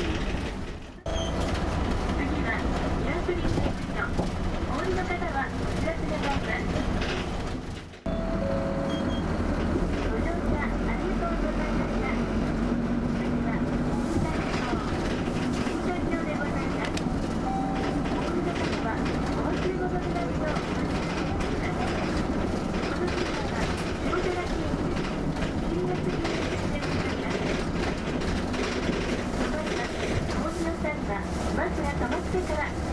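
City bus driving through town, heard from inside the cabin: a steady low engine drone with road and rattle noise. The sound drops out briefly twice, about a second in and about eight seconds in.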